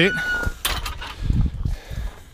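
A backyard gate being worked: a brief squeak of its hinge, then a sharp clack and a few dull thumps.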